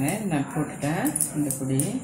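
A person speaking, over light clicks and rustles of plastic basket-weaving wire being handled.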